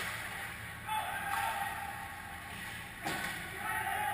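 Ice hockey rink game sounds: skates scraping on the ice and distant shouting from players, with a sharp knock about three seconds in.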